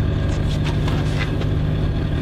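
Fishing cutter's engine running steadily, a constant low hum.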